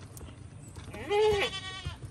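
A single loud bleat from a farm animal, about a second long, its pitch arching up and then falling, with a waver near the end.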